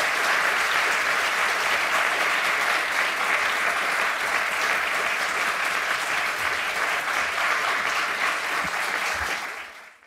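An audience applauding steadily, with the two people on stage clapping along. The applause fades out near the end.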